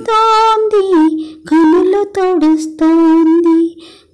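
A lone high voice humming a slow song melody without accompaniment, in several long held notes with short breaks between them.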